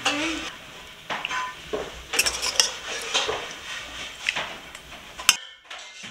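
A metal serving spoon clinking and scraping against a stainless steel pot and a ceramic serving dish as lamb sauté is spooned out, in a handful of separate clinks. The sound cuts off abruptly near the end.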